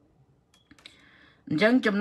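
A few faint clicks, then a man speaking from about one and a half seconds in.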